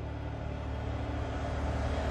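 A low, steady rumbling drone with a hiss, slowly growing louder. It is trailer soundtrack audio played in reverse.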